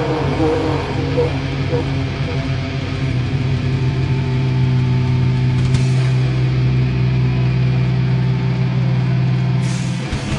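Amplified electric guitars of a heavy metal band sustaining a steady low droning note, with wavering voices over it in the first couple of seconds. The full band kicks back in just before the end.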